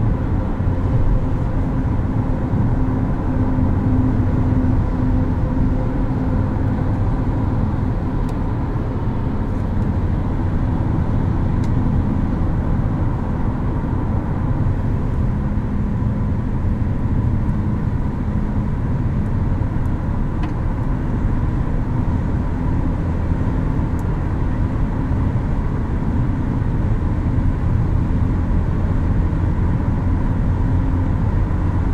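Steady in-cabin road noise of a 2022 Infiniti QX55 cruising at highway speed: tyre and wind rush over a low hum from its 2.0-litre variable-compression turbo four.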